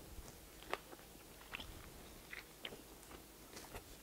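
A person chewing a mouthful of roast beef sandwich on whole-wheat bread with crisp lettuce: faint, irregular small clicks and crunches.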